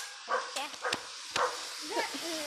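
A dog giving a few short barks.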